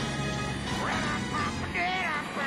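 Background music with a man and a woman yelling in short, shrill bursts through the second half.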